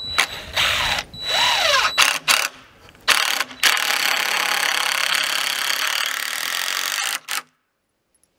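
Cordless drill driving screws through a short wooden gusset block into a wooden frame: several short runs, then one long run of nearly four seconds that stops suddenly near the end.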